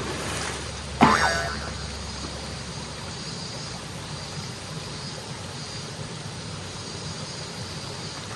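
A splash as a person drops into a shallow rocky mountain stream. About a second in comes a sudden comedic 'boing' sound effect that glides in pitch. After it, the stream runs on with a steady rush.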